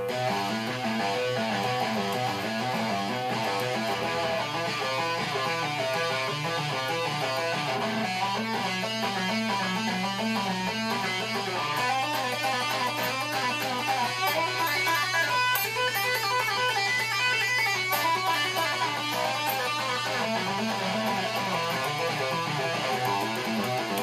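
Electric guitar playing a continuous, fast single-note finger-strengthening exercise: picked notes run in quick repeating patterns that climb and fall along the fretboard. A steady low hum sits underneath.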